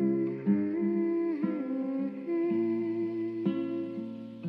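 Soft background music: a wordless hummed melody over guitar, with a gliding phrase about a second in.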